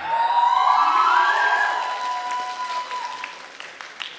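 Audience applauding and cheering as a dance number ends, with one long high-pitched whoop held over the clapping for about three seconds; the applause dies away toward the end.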